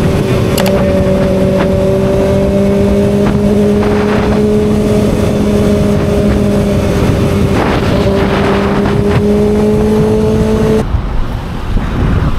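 Sport motorcycle engine cruising steadily in fifth gear at highway speed, a constant engine drone at nearly level pitch over the rush of wind and road noise. About a second before the end the engine sound stops abruptly.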